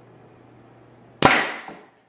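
Homemade compressed-air Nerf Rival launcher firing once about a second in: a sharp crack as its quick exhaust valve dumps 150 psi of air behind the foam ball, dying away over about half a second, with a faint knock just after.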